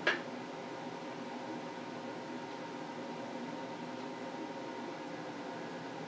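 A single short, sharp knock at the start, then a steady mechanical hum in a small kitchen, with a faint whine held on one pitch.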